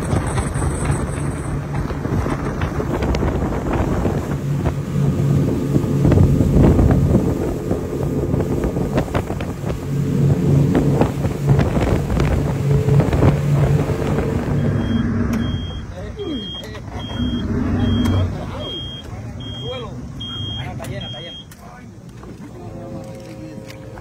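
Motorboat engine running steadily under way, with wind and water noise over it. About two-thirds of the way in it drops away, and a run of short, evenly spaced high beeps follows, roughly one a second, with voices under them.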